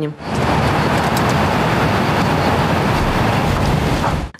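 Tractor working between vineyard rows: a steady engine rumble under a loud rushing noise, starting just after the start and cutting off suddenly at the end.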